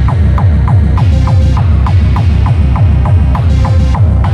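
Hardcore techno (gabber) track: a fast, even kick drum with each hit sweeping down in pitch, and a higher note sliding down on every beat.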